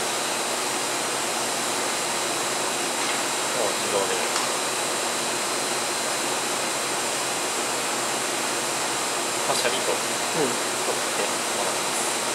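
Steady, unchanging fan-like hiss of running equipment or ventilation, with a thin steady high tone in it.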